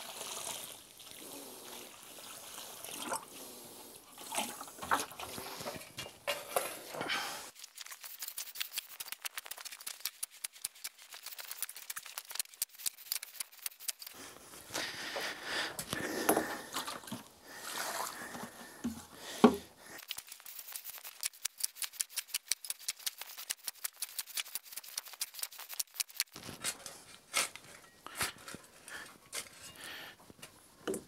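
Nutrient water poured from a plastic bucket onto a pile of soil and IMO-3, then a shovel scraping and turning the wet pile, with one sharp knock about twenty seconds in as the loudest sound.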